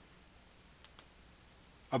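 A computer mouse button clicked once: two short sharp ticks in quick succession, the press and release, about a second in.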